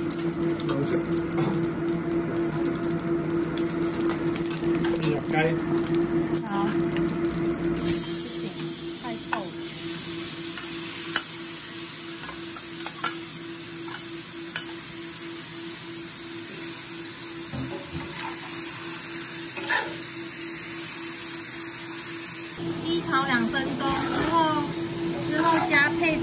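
Stir-frying in a wok: a metal spatula stirs dry spices in oil over a steady low hum, then marinated chicken sizzles in the hot pan while the spatula scrapes and clicks against it. The sizzle gets louder about eight seconds in.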